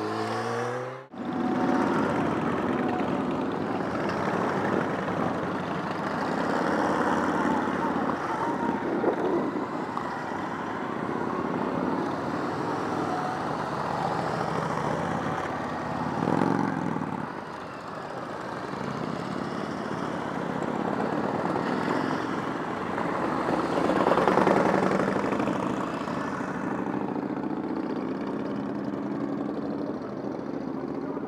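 A line of motorcycles riding past one after another, the engine noise swelling and fading as each bike goes by, with a group of cruisers among them. The sound dips briefly about a second in and is loudest a little past two-thirds of the way through.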